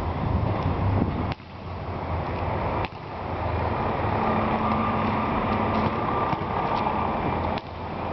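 Steady low outdoor rumble of urban background noise, broken three times by a sharp click followed by a sudden dip in level.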